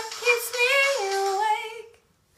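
A female voice singing unaccompanied, holding long notes that step down in pitch about a second in, then fading out just before the end.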